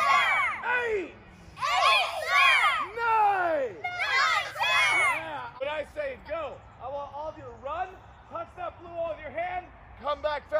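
A group of children shouting drill call-outs together, several loud high-pitched shouts in the first half, then shorter, quieter calls.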